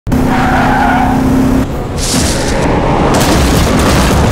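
Film sound effects of a car speeding in with tyres skidding, then a crash as it smashes through a metal gate near the end.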